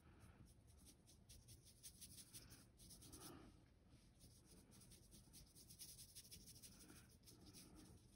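Near silence, with the faint, irregular brushing of a watercolour paintbrush stroking paint across paper.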